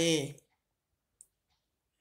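A reading voice trails off at the start, then near silence broken by a single faint, short click a little past halfway.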